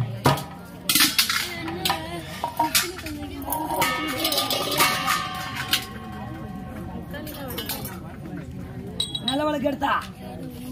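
Street-theatre performance sound: metallic clinking, densest in the first half, under a performer's rising and falling voice, with a steady held instrument note around the middle.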